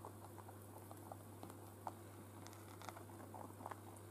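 Rabbits eating hay from a bowl: faint, irregular crunching clicks of chewing and rustling hay, several a second.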